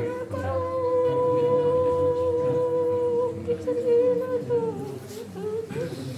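Nyidau, the Dayak Kenyah weeping chant for the dead: a mourner's voice holds one long hummed note for about four seconds, dipping in pitch as it ends, then trails into lower, wavering sounds.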